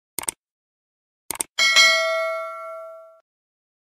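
Subscribe-animation sound effect: two quick double clicks like a mouse button, then a bright bell ding that rings out and fades over about a second and a half.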